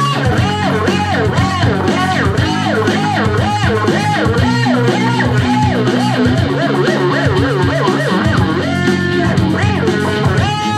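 Guitar jam: a lead guitar line full of quick pitch bends, playing over held bass notes.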